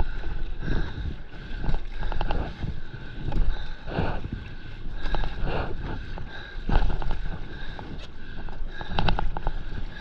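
Stand-up paddleboard moving through choppy sea water: water sloshing and splashing around the board and paddle, with wind buffeting the microphone in a constant low rumble. Short splashy bursts come every second or so.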